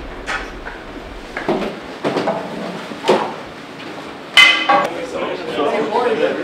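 Hockey equipment knocking and clinking in a locker room: sharp knocks about a second apart and a loud ringing clink about four seconds in, with men's voices talking near the end.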